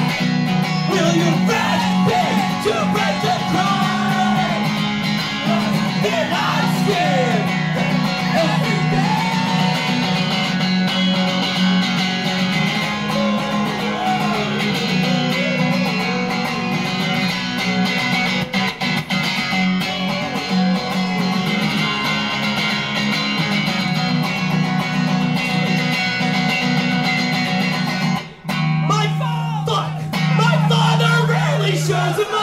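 Solo amplified electric guitar strummed in chords through a live song, with a brief stop near the end before the playing comes back in.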